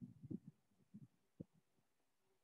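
Near silence on a video call, broken by a few faint, short low thumps in the first second and a half.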